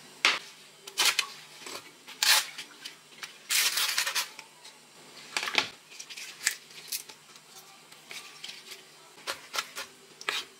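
Chef's knife cutting crisp carrot and then a green vegetable on a wooden cutting board: irregular, sharp knocks of the blade hitting the board, with one longer rasping cut about three and a half seconds in and a quick run of chops near the end.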